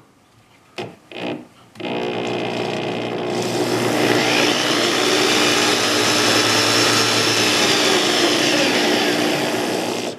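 Variable-speed electric drill spinning a small model piston air compressor with a Scotch yoke mechanism. It starts up about two seconds in and runs continuously, and its whine climbs in pitch and then falls back as the drill speeds up and slows down. It cuts off at the very end.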